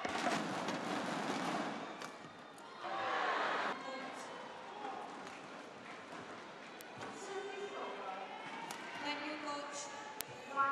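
Badminton play in an arena: a few sharp racket-on-shuttlecock hits over steady crowd noise, with louder surges of crowd noise in the first two seconds and again around three seconds in.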